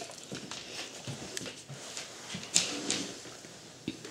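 Soft rustling and scattered light clicks of movement on a bed comforter. A brief louder rustle comes about two and a half seconds in, another just after, and a click near the end.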